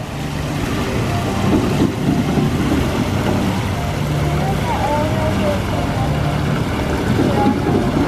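Water rushing and splashing at an Archimedes-screw fountain: water churned by the turning screw and pouring over a stone wall into the pool, a steady noise.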